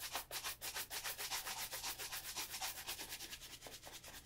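Shoe brush swept rapidly back and forth over the leather upper of an Allen Edmonds Margate shoe, about seven strokes a second, easing off slightly near the end.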